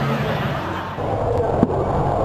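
Top Fuel dragster's nitro engine heard from trackside, a dense crackling racket, with one sharp crack about a second and a half in.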